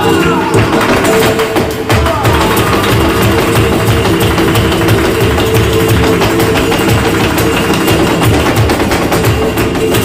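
Live flamenco: Spanish guitar playing, with a dancer's rapid footwork (zapateado) striking the stage in quick, sharp taps.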